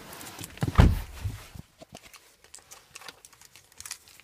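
Handling noise as the camera is moved around a car's interior: a dull thump about a second in, then scattered light clicks and rustling.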